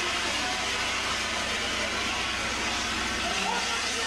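A burning van's fire giving a steady rushing noise with faint crackling, and men's voices faintly near the end.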